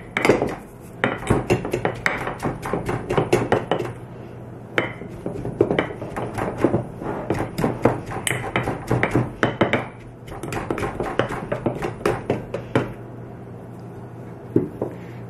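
Wooden tamper packing shredded, salted cabbage down into a glass half-gallon mason jar: bursts of quick, sharp knocks, easing off briefly about four and ten seconds in. The cabbage is being pressed down to squeeze out its juice for the sauerkraut brine.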